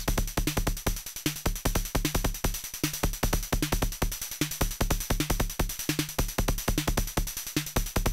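Make Noise 0-Coast synthesizer patched as a kick drum, playing a fast repeating kick pattern. Each hit has a sharp click on top and a short low body from the triangle wave, with a little overtone grit, shaped by the Dynamics low-pass gate.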